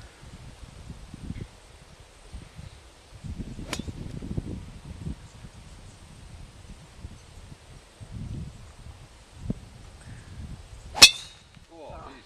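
A golf driver striking a teed ball near the end: one sharp, loud crack with a brief metallic ring. A fainter single click comes about four seconds in.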